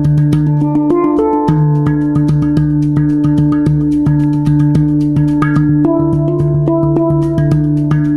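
Hang, the Swiss-made steel handpan, played with the fingers in a quick run of struck notes. A low note and its octave ring on steadily beneath them.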